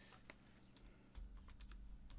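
Faint keystrokes on a computer keyboard as a short word is typed: a few scattered clicks at first, then quicker ones in the second half, over a low rumble that comes in about a second in.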